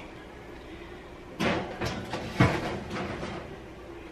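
Oven door being opened and a metal roasting pan of caramel popcorn put into the oven: a few clunks and clatters starting about a second and a half in, the sharpest about a second later.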